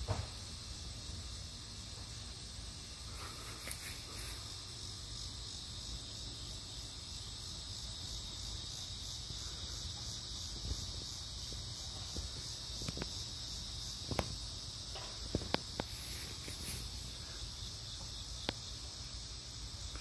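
Steady high-pitched chorus of insects singing, with a few faint clicks in the second half.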